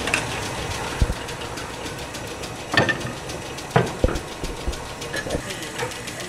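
Metal-spinning lathe running steadily with a copper disc clamped to its steel chuck, with about five sharp knocks scattered through it.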